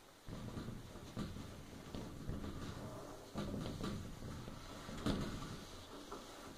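A paper towel scrubbing along the metal bottom track of a shower enclosure, a rough rubbing with a few knocks of the gloved hand against the frame. It starts suddenly just after the beginning.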